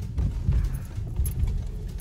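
Low rumble inside a car's cabin as the car rolls slowly, with a few light irregular knocks.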